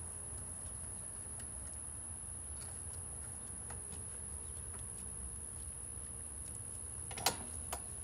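Faint clicks and small handling noises as a photocell's neutral wire is connected by gloved hands in an electrical panel, with one sharper click near the end, over a steady low background hum.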